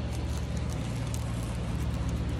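Steady low rumble of nearby road traffic, with faint scratchy rubbing as a fingertip wipes the dried coating off a sunflower head's seeds.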